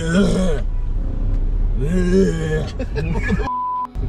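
A man's drawn-out, groaning vocal sounds, twice, over the low rumble of a car cabin. Near the end the background cuts out for a short, high, steady beep, an edited-in censor bleep.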